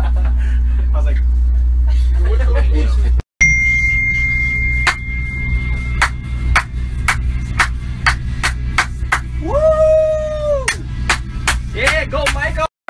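Steady low rumble of a tour bus on the move, with faint voices. After a cut, music with sharp percussive hits about three a second, a steady high tone, and a held vocal note that rises, holds and falls near the end.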